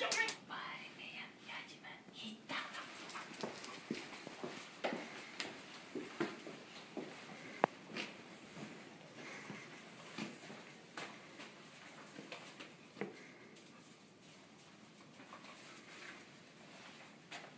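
A dog searching on a leash over a straw-covered barn floor: irregular sniffing and panting with footfalls and small knocks, and one sharp click about seven and a half seconds in.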